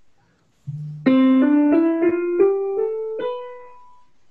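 Keyboard playing a C major scale upward, one note at a time, each note struck and ringing into the next, after a single lower note; the last note fades out.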